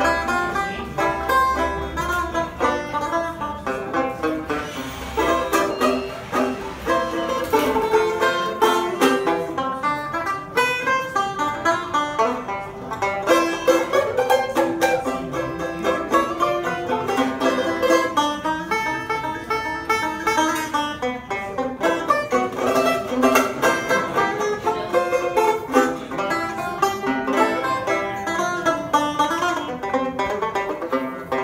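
Banjo played solo, a steady stream of quick plucked notes.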